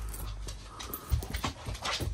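Loose metal coins clicking against one another as a hand pushes them around on a fabric cushion, a few short clicks in the second half.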